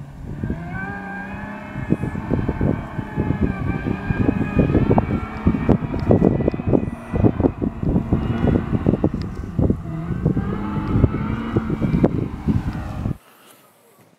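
Supercharged V6 engine of a 2007 Toyota FJ Cruiser working hard in soft sand, its note holding and bending gently up and down, with loud irregular buffeting over it. It cuts off suddenly near the end.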